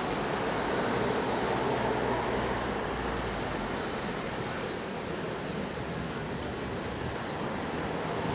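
Steady rushing wind noise on the microphone, with low buffeting rumble.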